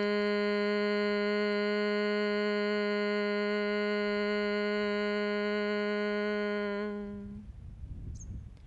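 A man's steady closed-mouth hum held on one low pitch, the long bee-like exhale of Bhramari pranayama, fading out about a second before the end.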